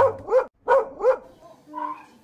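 A dog barking four times in quick succession, short barks that each rise and fall in pitch.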